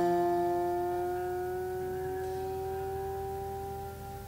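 Grand piano's last chord ringing out, its steady notes slowly fading away.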